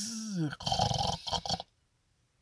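A man's voice trails off in a falling drawn-out vowel, then makes a rough, throaty growl-like sound for about a second. It stops about a second and a half in.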